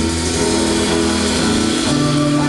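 Live band music: a loud, droning passage of held chords, shifting to a new chord near the end.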